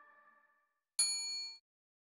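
The last of the outro music fades away in the first half-second; then, about a second in, a single bright bell ding rings briefly and cuts off. It is the notification-bell chime of a subscribe-button animation.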